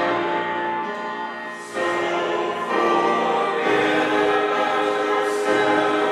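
Church choir singing, holding long notes together, with a brief drop for a breath about a second and a half in before the voices come back in louder.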